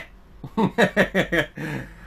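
A man laughing in a run of short, quick bursts about half a second in, ending in a breathy exhale.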